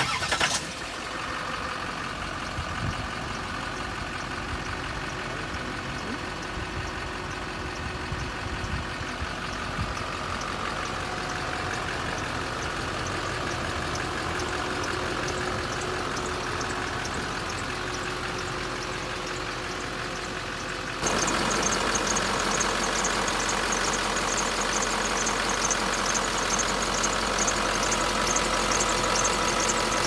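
The engine of a 2006 Chevrolet dump truck cranks and catches, then settles into a steady idle. About 21 seconds in it becomes louder and brighter, with a fast, fine ticking on top of the idle.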